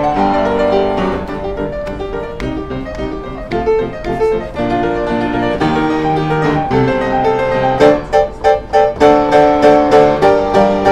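Acoustic upright piano played by hand, with chords and a melody line. Near the end the playing turns to loud, repeated chords struck about three times a second.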